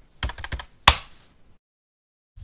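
Keyboard-typing sound effect: a quick, irregular run of clicks, one much louder than the rest a little under a second in.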